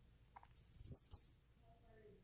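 Squirrel monkey giving a high, shrill chirp: one call about half a second in that holds and then dips slightly in pitch, with a short second note right after, under a second in all.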